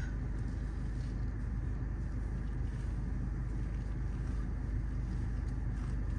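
Steady low hum inside a parked car's cabin, with the engine idling.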